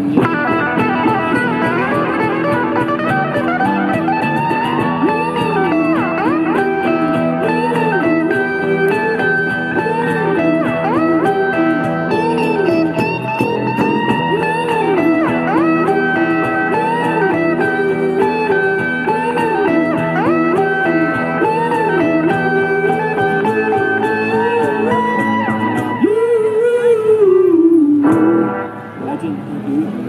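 A live street band plays on amplified electric and acoustic guitars over a cajon beat, with a lead line bending up and down. Near the end a last long note slides down, and the music stops about two seconds before the end.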